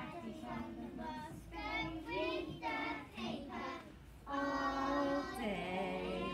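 Young children singing a nursery rhyme together in short phrases, then holding one long note about four seconds in, the loudest part.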